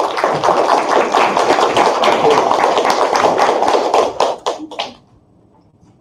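Audience applauding: dense clapping that thins out after about four seconds to a few last separate claps and stops about a second later.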